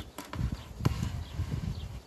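Wooden beehive frames knocking and scraping against the hive box as they are handled: a few sharp clicks, the loudest a little under a second in, over a low rumble of handling noise.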